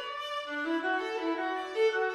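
Viola bowed in a classical melodic passage, moving from note to note, with a lower note entering about half a second in and a louder note swelling near the end.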